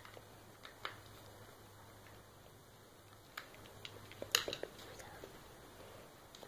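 Faint clicks and light metallic taps of a screwdriver working the Phillips screws out of a dirt bike's metal engine side cover, with the cover being handled. The sharpest click comes about four seconds in.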